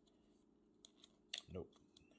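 A few sharp plastic clicks from the small switch on a battery-operated night light being flipped, the loudest about two thirds of the way in; nothing comes on, as no batteries are fitted.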